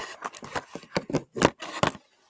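A quick run of irregular clicks and scrapes close to a microphone, with the sharpest clicks in the second half.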